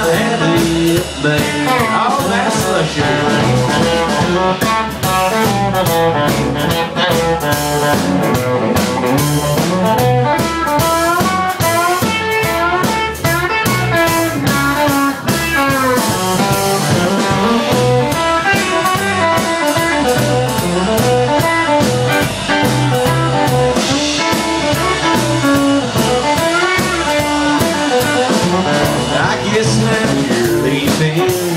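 Live country band playing an instrumental break: electric guitar taking the lead, with bending notes, over upright bass and drums.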